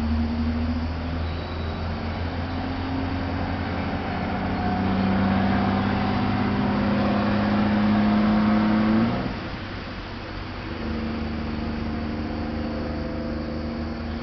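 An engine running in the background, its pitch climbing slowly over several seconds before the sound drops away suddenly about nine seconds in, leaving a lower steady hum.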